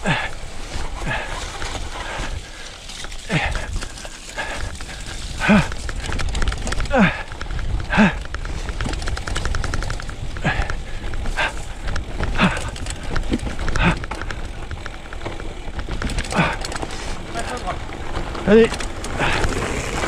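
Gravel bike rolling over a rutted grass-and-dirt track, a steady rumble of tyres and wind, with the exhausted rider's short, breathy grunts every second or two.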